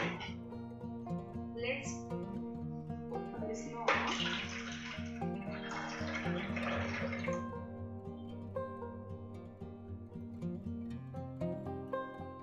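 Red juice pouring from a slow juicer's spout into a glass jug, starting about four seconds in and lasting roughly three and a half seconds, over background music.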